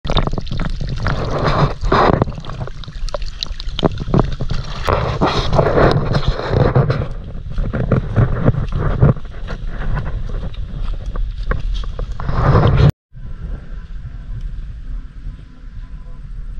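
Wind buffeting a phone microphone, with a heavy low rumble and irregular knocks from the phone being handled while walking outdoors. It cuts off abruptly about 13 seconds in, and a quieter, steadier outdoor ambience follows.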